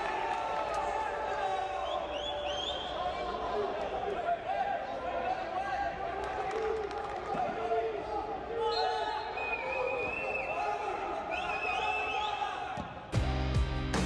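Voices of match commentary, excited, over the broadcast's match sound. About a second before the end they cut off abruptly and music with a heavy bass begins.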